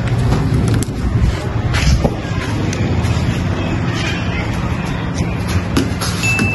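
Background music over a steady low rumble of noise, with a few light knocks.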